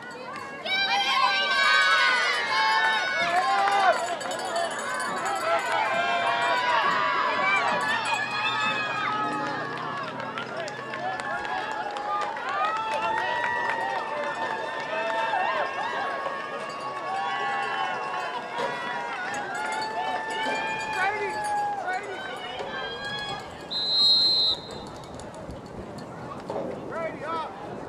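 Many spectators shouting and cheering at once, with high-pitched voices overlapping. A short, high referee's whistle blast sounds near the end.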